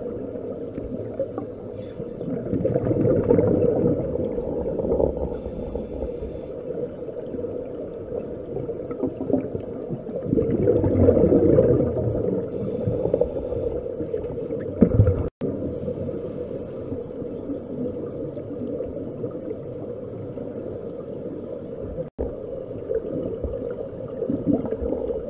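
Underwater recording with a steady low hum, broken by two long swells of bubbling from scuba divers' exhaled air and a few short high hisses. The sound cuts out for an instant twice.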